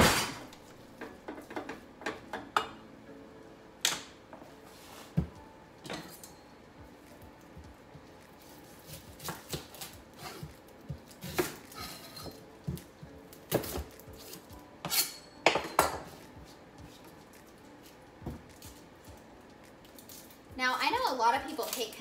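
Irregular knocks and clinks of kitchen work: a wooden spoon knocking against a skillet, loudest at the very start, then a knife cutting an onion on a wooden cutting board.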